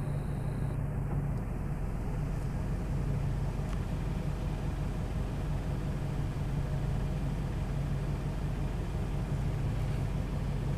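Steady low hum of a car's engine running, heard from inside the cabin.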